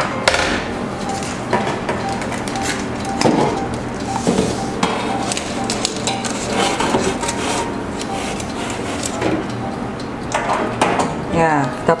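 Repeated metal knocks and clatters as an aluminium tube cake pan is set onto the tray of an electric countertop oven and the oven's glass door is shut.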